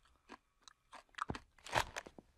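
Cheese balls being chewed: a string of short, irregular crunches, the loudest near the end.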